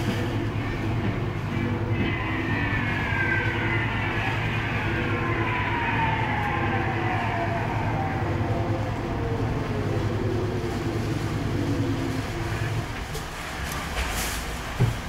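Coin-operated airplane kiddie ride running, a steady low mechanical rumble with a long tone that slowly falls in pitch over several seconds. The rumble drops away shortly before the end as the ride stops.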